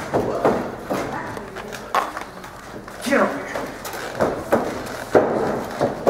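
Indistinct talking in a large, echoing hall, with a few sharp knocks, one about two seconds in and another near the end.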